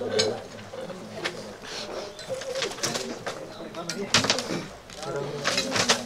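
A bird cooing, with low voices murmuring and a few sharp clicks, the loudest about four and five and a half seconds in.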